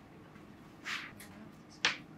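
Small handling sounds at a craft worktable: a soft brushing sound about a second in, then a single sharp click near the end, as tweezers pick up pressed flower petals.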